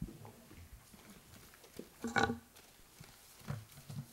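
Mostly quiet room with faint small rustles, broken about two seconds in by one short, grunt-like human vocal sound.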